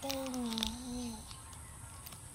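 A single drawn-out vocal tone, held for about a second and falling slightly in pitch before it stops.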